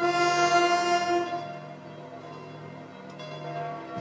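Military wind band with brass, saxophones and drums holding a sustained chord. It is loud for about the first second, then carries on as a quieter held tone.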